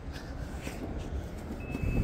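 Low rumble of wind and handling noise on a phone microphone. Near the end comes a short, faint electronic beep, the warning beep of the Mazda CX-50's power liftgate as it is triggered to open.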